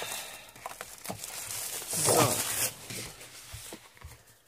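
Clear cellophane wrapping crinkling and rustling as a pack of patterned paper sheets is pulled out of it by hand, with irregular small crackles.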